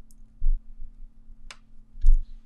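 Hands pressing and smoothing sublimation paper, taped down on a puzzle blank, against a tabletop. A dull thump comes about half a second in and a single sharp click about a second and a half in, over a faint steady hum.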